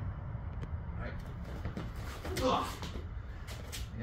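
A man's short grunt, "ugh", about two and a half seconds in, as a partner's elbow strike catches him in the side during a martial-arts drill. Several short knocks and rustles come near the end, over a steady low hum.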